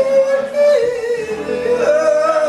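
Live blues-style vocal: a man sings a long, high held note that dips about a second in and climbs again near the end, with electric guitar accompaniment.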